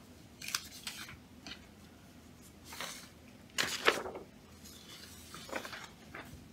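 Sheets of paper being handled and shuffled: several short rustles, the loudest a little under four seconds in.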